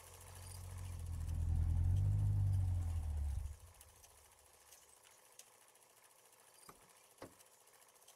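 Deep, low rumbling swell of a station ident's sound effect. It builds over about two seconds and cuts off about three and a half seconds in, followed by a quiet stretch with two faint ticks near the end.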